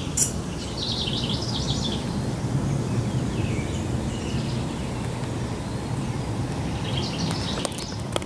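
Outdoor background noise: a steady low hum with short bursts of high chirping about a second in and again near the end.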